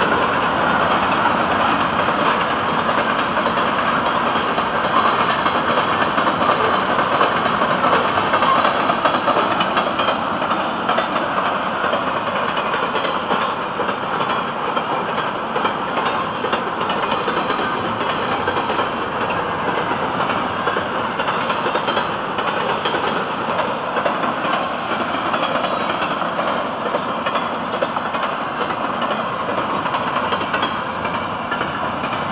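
Florida East Coast Railway freight cars rolling past close by: a steady rumble and hiss of steel wheels on rail from loaded rock hopper cars and then trailers on flatcars, easing slightly after about ten seconds.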